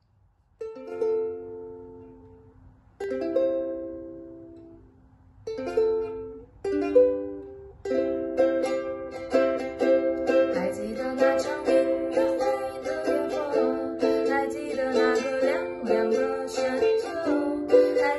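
Ukulele strummed: four single chords, each left to ring and fade, then steady rhythmic strumming from about eight seconds in.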